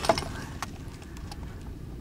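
Handheld camera handling noise: a few faint clicks near the start over a low, steady background.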